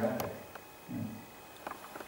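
Two brief low vocal sounds from a person, like short murmurs, with a few light clicks in between and near the end.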